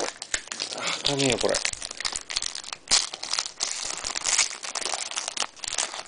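Foil wrapper of a hockey trading-card pack crinkling and crackling irregularly as it is handled and opened.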